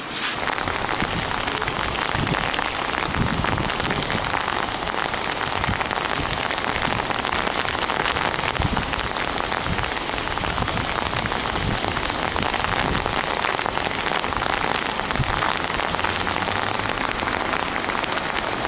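Steady rain falling on pavement, with irregular low thuds underneath.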